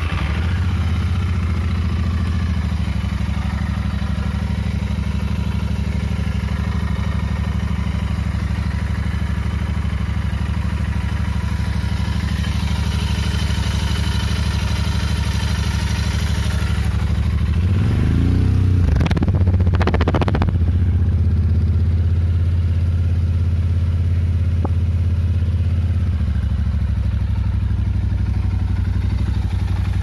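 Royal Enfield Interceptor 650's air-cooled 648 cc parallel-twin idling steadily. About eighteen to twenty seconds in the throttle is blipped twice, the revs rising and falling quickly before it settles back to idle.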